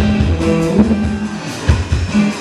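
A live rock band playing: electric guitars and bass holding notes over a drum kit, with drum hits cutting through.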